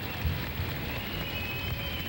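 Crowd ambience on an old cassette field recording: a steady noisy hum with irregular low bumps and faint, indistinct background sounds.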